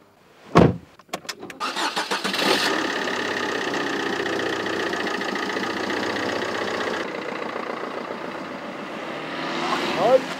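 A car door shuts with a heavy thud, then a small car's engine is cranked and starts, and runs steadily at idle with a banana stuffed in its tailpipe.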